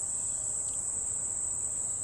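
Steady, high-pitched chorus of insects singing without a break.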